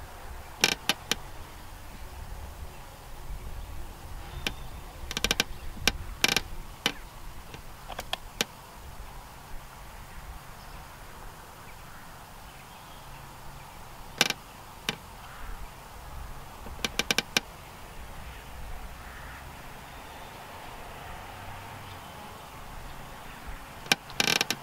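Sparse light clicks and ticks from fishing tackle being handled as a hook is rebaited, some single and some in quick little clusters, over a steady low rumble of wind on the microphone.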